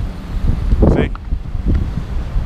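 Low, irregular rumble of wind buffeting the microphone over nearby street traffic. One short spoken word is heard about a second in.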